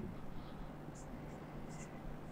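Marker pen writing on a whiteboard: faint, short, high squeaks of the pen strokes, a few of them from about halfway in.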